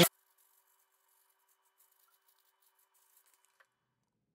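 A spoken word cut off right at the start, then near silence with almost no sound at all.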